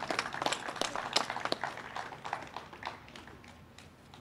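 A small group applauding outdoors: scattered hand claps that thin out and die away over the last second or so.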